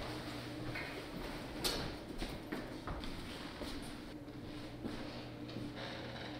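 A few scattered soft knocks and clicks of footsteps and movement in a quiet room, over a low steady hum of room tone.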